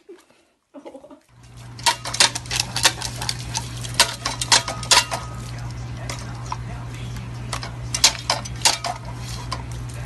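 Irregular sharp metallic clicks and clanks from a dog pawing and nosing the pedal of a metal step-on dog water fountain, over a steady low hum.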